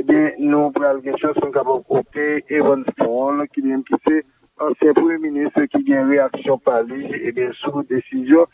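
A person speaking continuously, with one short pause a little past the middle.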